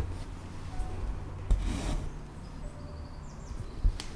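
Embroidery floss being pulled through linen held taut in an embroidery hoop: a short rasping rub about a second and a half in, with a faint tick near the end.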